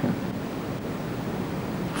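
A steady, even hiss with no pitch or rhythm: the background noise of an amateur VHS camcorder recording, heard in a gap between words.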